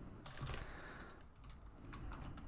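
A few faint computer keyboard clicks.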